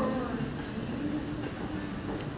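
Concert audience applauding and cheering as a song ends, a steady wash of noise, with the last sung note dying away at the very start.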